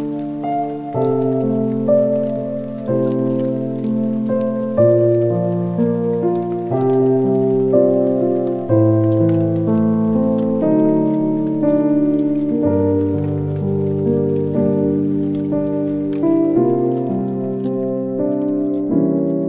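Soft background music: sustained keyboard-like chords that change about once a second, over a faint, steady patter.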